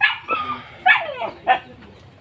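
A dog barking in several short, sharp yelps, some falling in pitch. The loudest comes right at the start, and two more follow about a second in and half a second after that.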